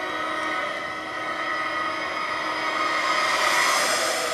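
A sustained, building drone from a film soundtrack, played through a laptop and picked up in the room, swelling louder toward the end.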